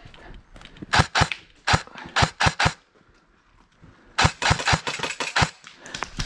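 Airsoft rifles firing a string of sharp single shots, a few tenths of a second apart, then a quieter pause about three seconds in and a quicker run of shots after it.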